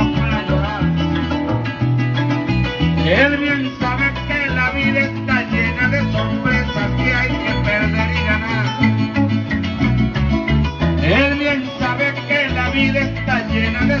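Venezuelan llanera music in an instrumental passage between sung verses: a llanero harp plays runs over a steady bass line, with other plucked strings, and there are two rising sweeps up the harp, about 3 s and 11 s in.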